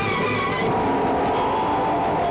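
Film soundtrack music, with a long held note that slides slightly down in pitch from about half a second in.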